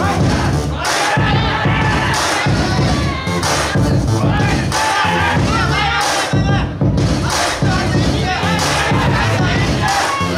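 Crowd shouting and cheering at a cage fight, over background music with a steady beat.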